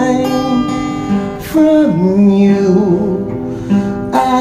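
Steel-string acoustic guitar with a capo playing a slow song, with a sung note drawn out over it and sliding down about halfway through.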